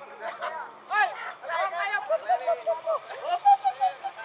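Several people's voices talking and calling out over one another outdoors, in short overlapping bursts.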